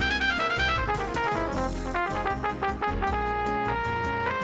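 Bossa nova jazz with a trumpet lead: a fast run of short notes, then slower, longer held notes about three seconds in, over a steady bass accompaniment.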